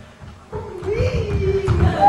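A long drawn-out voice sound that rises and falls in pitch, over low thuds.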